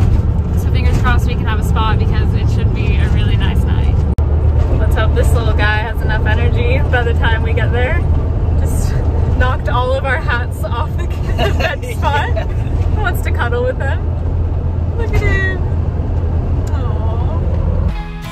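Campervan engine and road noise heard from inside the moving van: a steady low drone, with a woman's voice over it.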